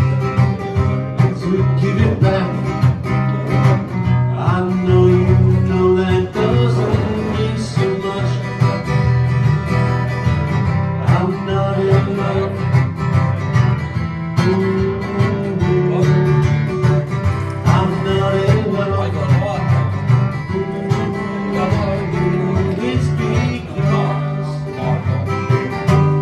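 Acoustic guitar strummed steadily with a man singing along.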